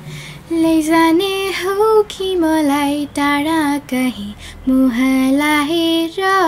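A young girl singing solo without accompaniment, in short phrases of held and gently bending notes, starting about half a second in.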